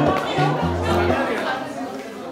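An acoustic guitar's strummed chords ringing out and fading, with people's voices talking over them.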